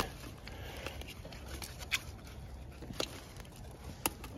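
Faint handling noise: a low rustle with a few scattered sharp clicks, about two and three seconds in and again at the end.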